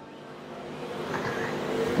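Radio-controlled race car running on an indoor track, the sound of its motor and tyres growing steadily louder.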